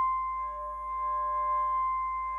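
Concert flute holding one long, steady note.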